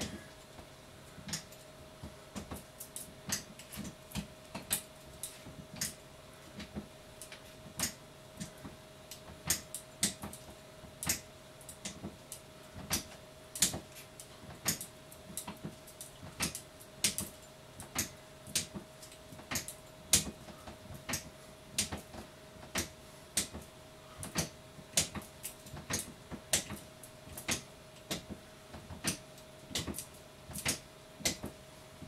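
Stepping machine clicking and clacking with each step, about two sharp clicks a second and uneven in loudness, over a faint steady hum.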